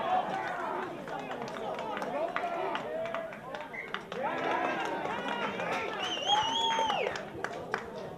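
Men's voices shouting and calling out across an open sports field, with one long drawn-out shout about six seconds in.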